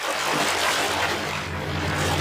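Intro sound effect: a steady rushing noise like a passing jet over a low rumble, the rumble growing stronger in the second half.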